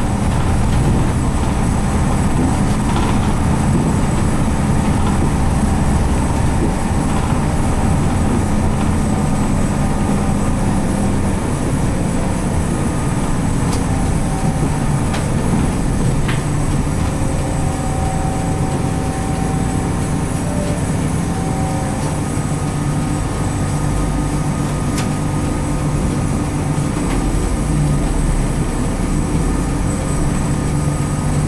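Interior running sound of a 1995 Nissan Diesel RM route bus: its FE6 six-cylinder diesel engine drones steadily under the floor, with road and body rattle from the cabin. The engine note drops to a lower pitch about a dozen seconds in and stays there as the bus eases off behind a bus ahead.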